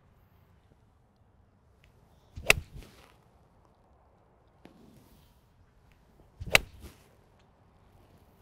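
Two crisp iron-on-ball strikes about four seconds apart: a Titleist T300 iron hitting golf balls off turf. Each is a sharp click with a short tail after it.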